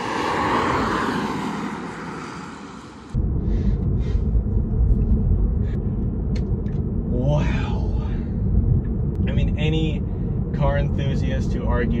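Tesla Model 3 Performance electric car driving past: the sound of its tyres and motor swells and fades over about three seconds. Then it cuts suddenly to a steady low road rumble inside the moving car's cabin.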